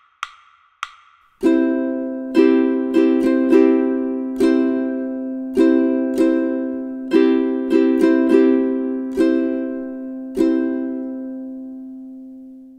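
Ukulele in GCEA tuning strumming a C chord in a syncopated rhythm, some chords held to ring over the following strong beat. Two short ticks come first; the strumming starts about a second and a half in, and the last chord rings on and fades out near the end.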